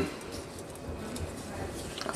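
Faint handling noises: gloved hands pushing a piece of cut mullet into a PVC bait mold, with a few light taps over a low room hum.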